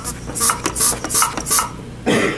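Hand pump of a cooling-system pressure tester being worked in four quick strokes, each with a short hiss of air, pressurising the tester for a dry test.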